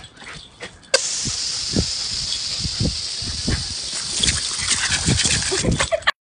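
Garden hose spray nozzle hissing, starting abruptly about a second in, with repeated soft snaps and gulps as a Shiba Inu bites at the jet of water.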